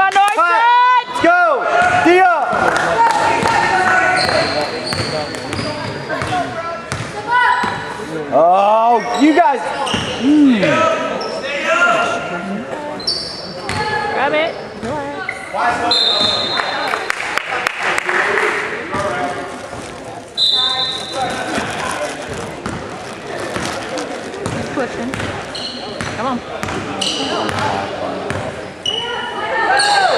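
Basketball game sound in a gym: the ball bouncing on the hardwood, sneakers squeaking during play, and crowd voices echoing around the hall. Squeaks come in quick bunches at the start and again about eight seconds in.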